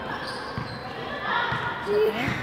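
Basketballs bouncing on a gym court floor: a few dull thuds at irregular spacing, under a murmur of voices.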